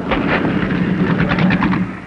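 A race car's engine running hard on the track as the car passes by, loud through most of the moment and fading near the end.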